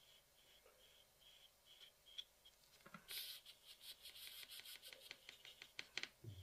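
Faint scratching of an electric nail file's small proximal fold bit worked over the cuticle and dry skin, in quick light strokes from about three seconds in. Before that only a faint high tone pulses a few times a second.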